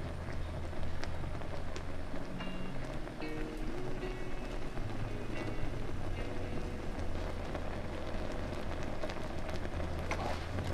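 Thick syrup with jackfruit seeds boiling hard in a frying pan, a dense crackle of bursting bubbles, under soft background music.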